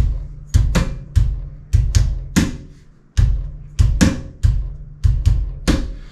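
Hands striking the metal armrests of a chair, playing a repeating drum groove of thumps and sharper taps in place of kick and snare. There is a short pause about halfway through.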